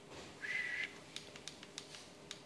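A short, steady high whistle-like tone about half a second in, then a run of light, quick key clicks as the presentation slides are paged through.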